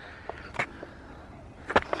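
Quiet outdoor background noise, with a couple of faint clicks, one about half a second in and one near the end.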